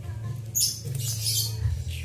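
High, scratchy squeaking calls from a caged songbird, two short bursts in the middle, over a steady low hum.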